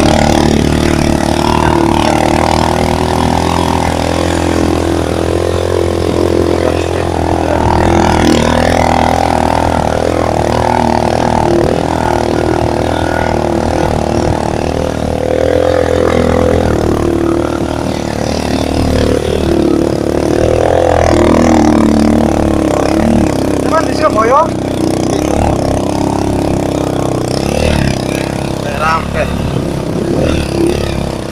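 Small motorcycle engine running continuously under load, heard from the pillion seat as the bike climbs a steep track; its note rises and falls a little with the throttle.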